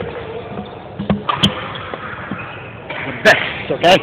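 General din and background chatter of an indoor badminton hall, with a couple of sharp clicks about a second in. Near the end come two loud knocks and handling noise as the phone camera is picked up, and a man says "Okay".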